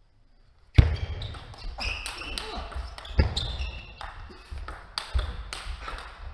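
Table tennis rally: clicks of the ball off bats and table, rubber soles squeaking on the court floor, and several heavy thuds of footwork. It starts suddenly a little under a second in.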